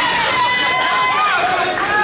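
Crowd of spectators shouting over one another, many voices at once. One voice holds a long, steady call for about a second, starting just after the start.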